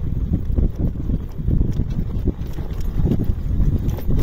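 Wind buffeting the microphone of a moving Honda Bros 150 motorcycle: an uneven low rumble.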